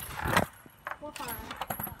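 A child's voice exclaiming "whoa", with a few light metallic clinks from a swing's chain.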